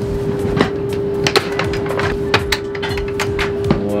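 Fold-out cabin table being pulled out of its side-ledge stowage: a string of sharp clicks and knocks of the mechanism and panel, over a steady hum.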